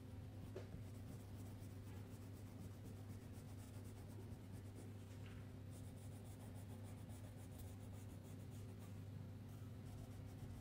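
Crayon scraping on paper in quick, repeated colouring strokes, faint, busiest in the second half, over a low steady hum.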